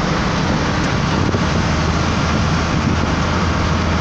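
Inside a heavy truck's cab at highway speed: a steady low engine drone under constant road and wind noise.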